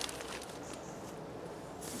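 Quiet outdoor background with a few faint, soft rustles as a nylon tarp's door flap is held open.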